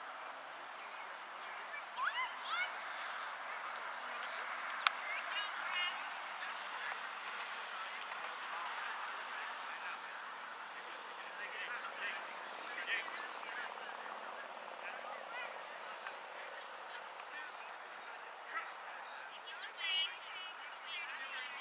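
Outdoor soccer-field ambience: faint, distant shouts of players and spectators over a steady outdoor background, with one sharp knock of a ball being kicked about five seconds in.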